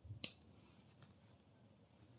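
A single sharp click about a quarter second in, a button pressed on a handheld oscilloscope as it is switched on, followed by a faint tick.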